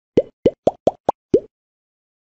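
Six quick cartoon 'bloop' plops, a sound effect in which each plop sweeps quickly upward in pitch. They come in a fast run of about a second and a half, the fifth the shortest and highest.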